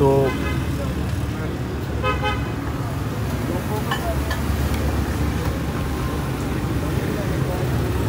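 Street traffic: a steady low engine rumble from passing vehicles, with a short horn toot about two seconds in.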